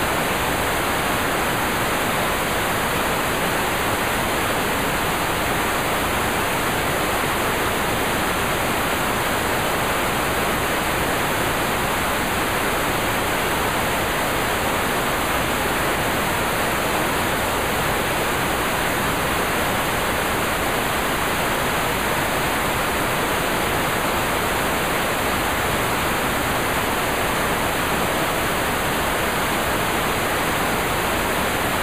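Loud, steady static hiss that cuts in abruptly and runs on unchanged, with no speech or other sound over it.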